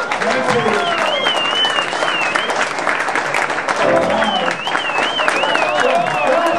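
Audience applauding and cheering after a song, with dense clapping and voices calling out; someone whistles a long wavering note twice.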